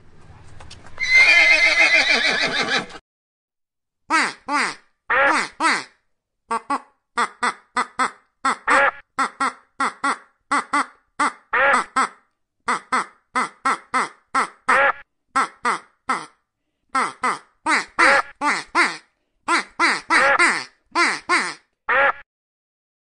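A horse whinnies loudly for about two seconds. It is followed by a long run of short honking calls from an Egyptian goose, two or three a second in irregular groups.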